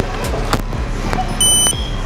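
Electronic beep from a store checkout's card terminal or register: a short high tone about one and a half seconds in, then a fainter, slightly higher one. It sounds over steady store background noise and a low hum.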